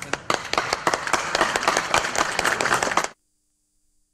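A group of people applauding, a dense patter of hand claps that cuts off suddenly about three seconds in.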